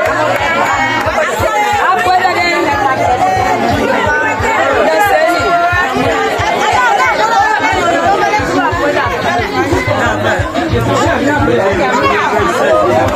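A crowd of many voices talking and calling over one another, with music and a low, regular beat underneath.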